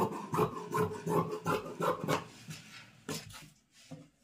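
Fabric scissors snipping through silk brocade and cotton lining: a quick run of cuts, about two or three a second, that thin out after about two seconds and stop near the end.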